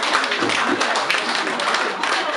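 Applause: a group of people clapping steadily.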